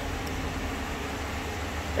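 The 5.7-litre Hemi V8 of a 2011 Dodge Challenger R/T idling steadily.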